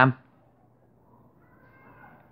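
Marker pen writing on paper, faint, with a thin squeak about a second and a half in, as the tail of a word ends.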